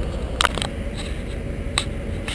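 A few sharp clicks from a handheld camera being handled, over a steady low engine-like rumble.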